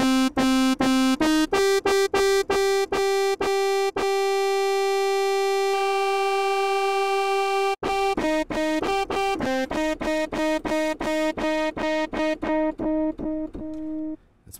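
Xfer Serum software synthesizer playing a patch with many overtones, each note chopped into quick repeated pulses several times a second and stepping through a few pitches. One note is held unbroken for about four seconds in the middle. A second oscillator has just been switched on and routed through the filter.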